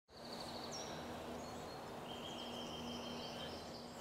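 Quiet outdoor ambience with faint birdsong: a rapid run of high notes at the start, a short falling whistle just under a second in, and a long steady high note through the second half. A faint low steady hum runs underneath.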